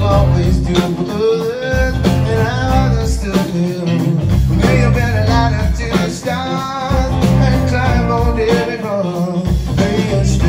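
Live band playing the instrumental intro of a slow blues-rock number: an electric guitar lead with bending notes over bass, drums and keys.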